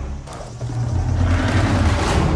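A steady low rumble in a film sound mix, after a brief drop in level just after the start.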